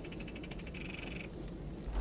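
A faint, rapid high-pitched electronic trill, a fast string of short beeps that runs together into a steady tone for about half a second, over a low room hum.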